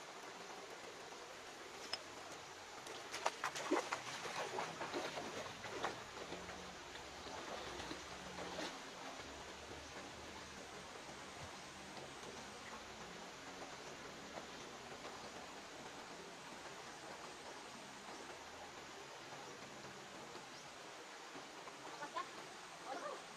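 Shallow river water running with a soft, steady hiss, and a person splashing in the pool, loudest in a cluster of splashes and knocks between about three and six seconds in, with one more near nine seconds.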